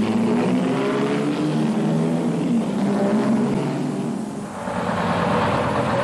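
Car engines running as cars drive past. The sound dips briefly about four seconds in, then the next car comes up.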